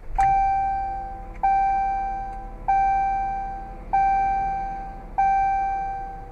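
Jeep Cherokee dashboard warning chime sounding five times, about a second and a quarter apart, each a single ringing tone that fades before the next, with the ignition switched on. A steady low hum runs underneath.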